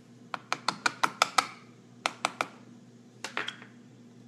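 A quick run of sharp, light clicks, about seven in just over a second, then two more and a few fainter ones near the end.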